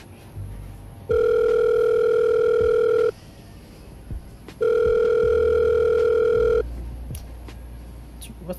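Telephone ringback tone heard while a call rings out: two long, steady beeps, each about two seconds, about a second and a half apart.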